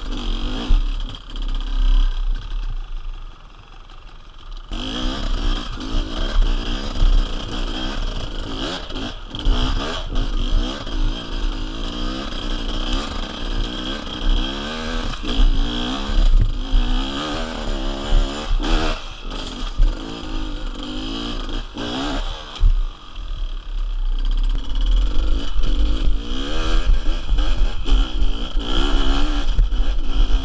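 Two-stroke Beta enduro motorcycle engine revving up and down as it picks its way uphill over loose brush and rocks, with knocks and clatter from the bike and debris. It quietens briefly about three seconds in, then picks up again.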